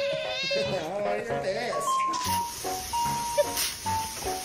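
A domestic cat yowling in long, wavering, drawn-out calls through the first half. From about halfway a melody of held notes takes over, with a few short sharp noises.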